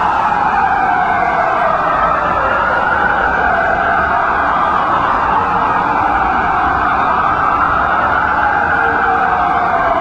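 Emergency vehicle sirens wailing, loud and steady, with a slow rise and fall in pitch.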